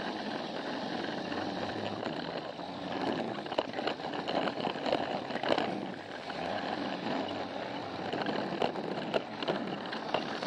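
Battery-powered Plarail toy train running along plastic track, heard from on board: a steady whir of the small motor and gears, with irregular clicks as the wheels pass over track joints.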